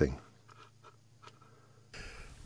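Near quiet with a few faint, light clicks and scrapes: hands handling a small LED panel board and its wires.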